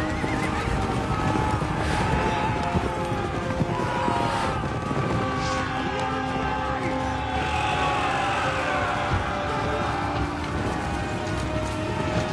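Horses neighing and hooves pounding in a cavalry charge, amid men's battle shouts, over sustained orchestral music.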